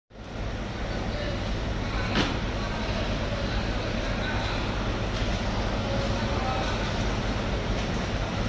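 Fish-market hall ambience: a steady low hum with faint distant voices, and a single sharp knock about two seconds in.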